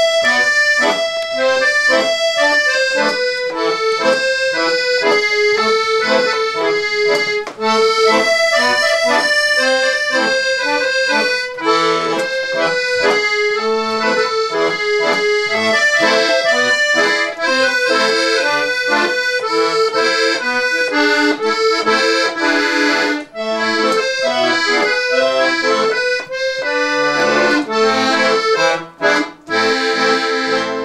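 A piano accordion played solo: a quick-moving melody on the treble keys over repeating chord accompaniment, with the bellows drawn out.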